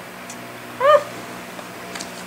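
A single short high-pitched call, its pitch rising and then falling, about a second in. It is either a brief exclamation of "oh" or a cat's meow. A steady low hum sits underneath.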